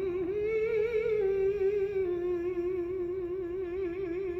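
Countertenor voice holding long wordless notes with a wide vibrato, stepping up in pitch about half a second in and easing back down.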